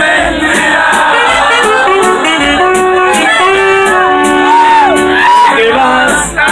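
Live huapango band music, loud, with a saxophone leading on long held notes and a note that bends up and back down near the end.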